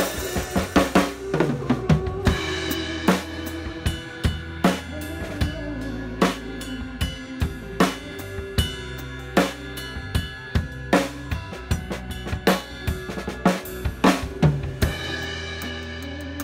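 Drum kit played live with a band: a steady groove of bass drum, snare and cymbals, with strong hits about every three-quarters of a second, over the band's sustained bass and chords.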